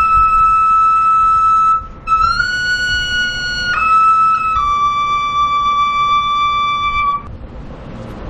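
A high-pitched wind instrument playing a slow air in four long held notes, stepping up and then back down, with a short breath about two seconds in. The music stops about seven seconds in.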